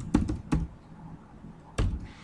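Computer keyboard keystrokes while typing a word: a few quick key presses in the first half-second, then one more near the end.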